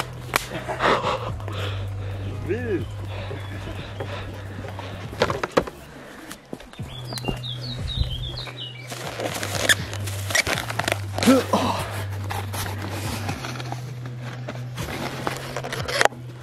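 Footsteps on a dirt forest trail and handheld-camera handling noise over quiet background music, which holds a steady low note that shifts now and then.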